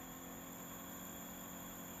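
Young Living AromaLux waterless essential-oil diffuser running with a faint, steady hum as its volume knob is turned up from the lowest setting; the knob sets both how much oil mist it sprays and how loud it runs.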